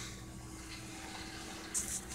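Quiet room tone with a faint steady hum, and one short soft hiss near the end.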